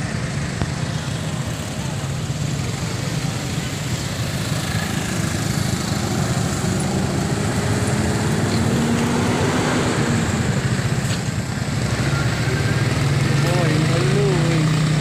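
Road traffic close by: motorcycle and motor-tricycle engines running and passing in a steady din, with people's voices mixed in.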